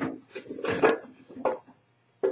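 Two halves of an Ultracal gypsum-cement mold knocking and scraping against each other in a few short hard clacks as they are handled, pulled apart and keyed together.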